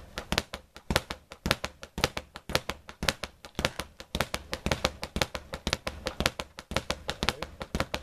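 Speed bag punched in a steady basic rhythm, the bag knocking rapidly and evenly as it rebounds off an overhead wooden platform. The even, unbroken rhythm is the sign of the strikes being kept on time, with the same size of rotation each punch.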